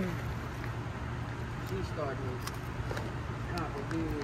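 A person eating popcorn: a few faint crunches and short hummed voice sounds while chewing, over a steady low hum.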